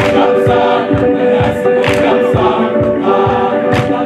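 A high school choir singing in harmony, with a steady low beat about three times a second under the voices.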